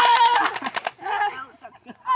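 Electronic machine-gun sound effect from a plastic toy gun: a fast, even rattle that cuts off suddenly about a second in, with children's voices shouting over it.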